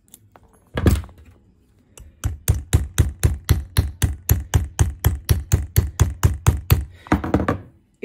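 Small hammer tapping a metal strap clip shut onto a canvas keychain strap, driving its teeth into the fabric: one blow, then a quick even run of about four taps a second.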